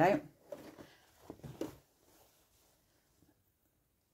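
A woman's voice finishing the word "go", then a few soft murmurs, then near silence with only faint room tone for the last two seconds.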